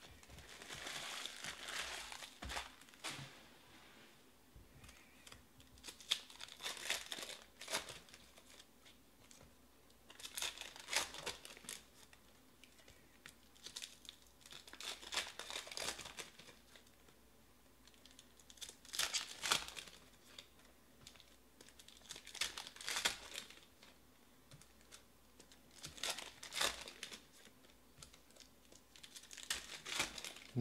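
Foil trading card pack wrappers being torn open and crinkled by hand, in short bursts about every four seconds.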